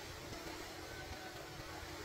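Steady outdoor ambient noise: an even wash across the range with an uneven low rumble underneath, and no distinct events.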